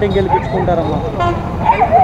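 A woman talking, with steady road traffic noise from motorbikes and auto-rickshaws behind her.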